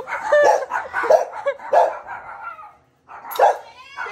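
Dogs barking at a gate: a quick run of short barks, a brief pause, then one more bark near the end.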